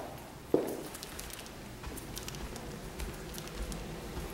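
Footsteps climbing carpeted stairs: a dull thud about half a second in, then fainter steps.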